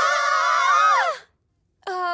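Several cartoon girls' voices crying out together in shock, a loud held group cry that breaks off after about a second. After a short silence, one brief single-voice cry comes near the end.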